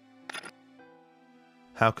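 Quiet background music of soft held chords, broken about a quarter second in by a brief sharp noise. A man's narration starts near the end.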